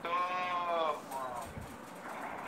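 A man's voice drawing out one long syllable, 'to…', for about a second with its pitch rising and falling, then a short second sound. This is speech only, a hesitation in the talk.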